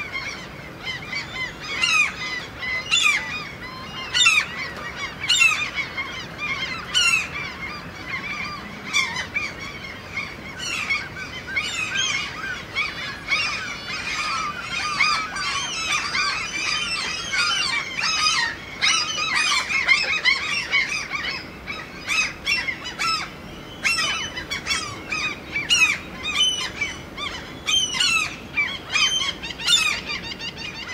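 A dense chorus of many birds calling over one another, short repeated calls coming thick and fast, busiest around the middle.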